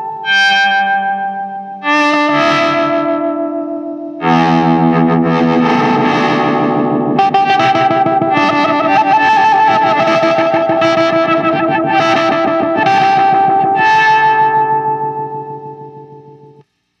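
Electric guitar played through a Hologram Electronics Infinite Jets Resynthesizer pedal: a few chords struck, then held as a sustained, synth-like resynthesized texture with a fast, even pulsing and slow chord changes. The sound fades away near the end.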